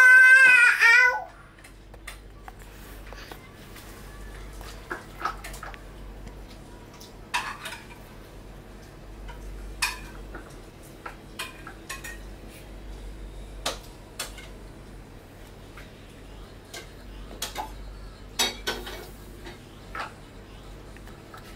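A toddler's loud, high, wavering squeal in the first second, then scattered light clicks and clatters of small hard objects knocking together.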